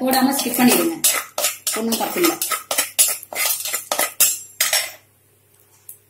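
Steel slotted spatula clinking and scraping against a clay cooking pot while stirring a tempering of seeds and dal in oil, in quick irregular strokes that stop about a second before the end.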